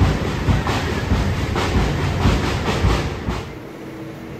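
Passing train's wheels clacking over rail joints in a steady rhythm, often in pairs, over a running rumble. It cuts off about three seconds in, leaving a quiet low hum.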